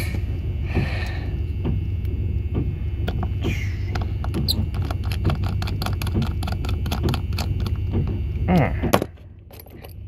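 A small screwdriver driving a screw into a brass cabinet lock housing: many quick metallic clicks and scrapes, thickest in the second half, over a steady low hum that stops about a second before the end.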